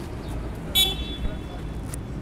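A short, high car-horn toot about a second in, over a steady low rumble of street traffic.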